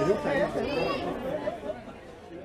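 Indistinct chatter of several people talking, fading out steadily.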